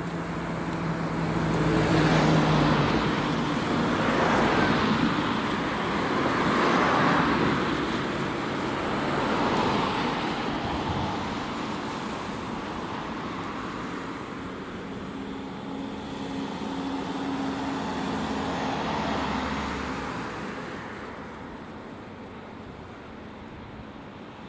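Road traffic passing close by: several vehicles go past one after another, each a swelling rush of tyre and engine noise, with a quieter stretch near the end.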